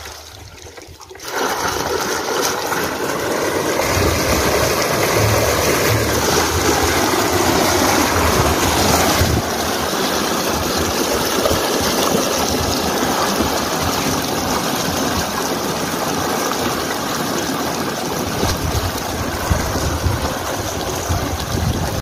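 Water gushing steadily out of the open end of a steel pipeline onto bare earth. The rush comes in abruptly about a second in.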